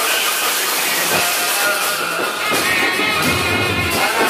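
Festive procession music from a street band, mixed with a loud steady hiss.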